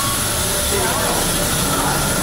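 Steady airport apron noise, a low rumble under a high hiss, with passengers' voices faint in the background.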